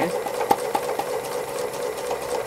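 Domestic sewing machine running steadily at free-motion embroidery, the needle stitching rapidly through layered appliqué fabric, with one sharper click about half a second in.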